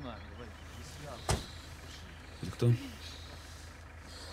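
A car engine idles with a steady low hum, heard from inside the cabin. A single sharp click or knock sounds about a second in.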